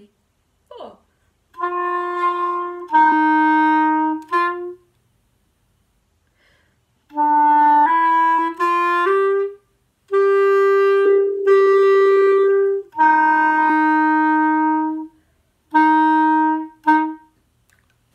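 Clarinet playing a slow, simple melody of mostly long held notes. A first phrase of three notes is followed by a pause of about two seconds, then a short rising run, a long held higher note, and two lower held notes, ending with a short note near the end.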